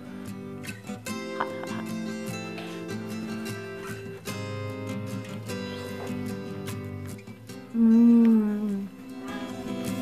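Light acoustic-guitar background music plays steadily. About eight seconds in, a loud hummed "mmm" of a person savouring food cuts in for about a second.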